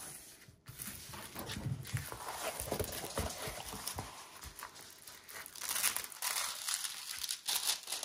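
Hands rubbing and pressing a diamond painting canvas flat, its clear plastic cover film crinkling, with the crinkling louder and brighter in the last few seconds. Sounds from the dog, which is unhappy, are also in the mix.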